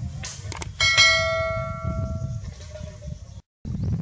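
A subscribe-button animation's sound effect: two quick clicks, then a bright bell chime about a second in that rings and fades over about a second and a half. A steady low rumble runs underneath, and the sound cuts out briefly near the end.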